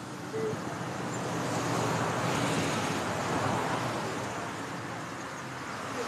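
A road vehicle passing by: engine and tyre noise swells to a peak about two to three seconds in, then fades.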